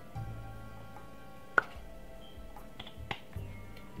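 Quiet background music with a plastic ketchup squeeze bottle being squeezed and handled over a tortilla: one sharp click about halfway through and two fainter clicks near the end.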